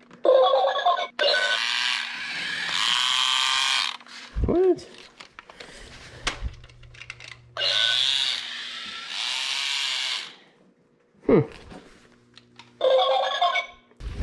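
Battery-operated Goldlok toy robot playing its electronic sound effects through its small speaker, in three bursts of a few seconds each; its old batteries still have charge.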